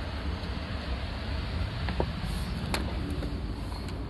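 Outdoor city ambience picked up by a handheld camera: a steady low rumble of wind on the microphone and distant traffic, with two sharp clicks of handling about two and nearly three seconds in.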